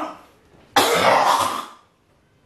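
A man hacking to clear his throat: one harsh, rough burst about a second long, starting a little before the middle.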